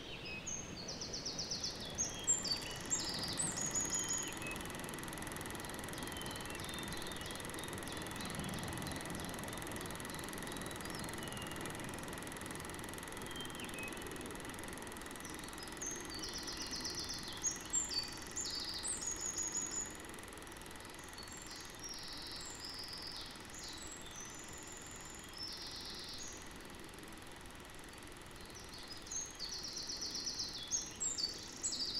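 Forest ambience: songbirds singing in clusters of quick, high chirps and trills, at the start, again around the middle, and near the end, over a faint steady background hiss.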